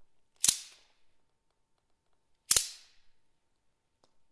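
Two sharp, loud percussive strikes about two seconds apart, each with a short ringing decay, played as accents within a contemporary accordion piece while the accordion rests silent.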